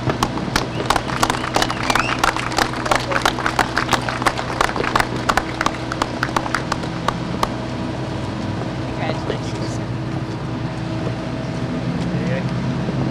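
A small group of people clapping, thinning out and stopping about seven seconds in. A steady low machine hum runs underneath, with faint voices near the end.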